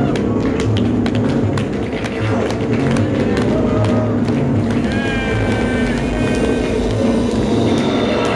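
Loud live band music with a steady bass groove and a high sliding melodic line about five seconds in, with sharp claps from the audience over it.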